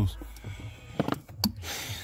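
Handling noise from hands working the unplugged throttle pedal position sensor's plastic connector under the dashboard: a low rumble, then a few sharp clicks about a second in.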